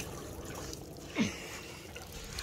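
Faint water trickling and lapping at the shoreline, with a brief low voice sound falling in pitch about a second in.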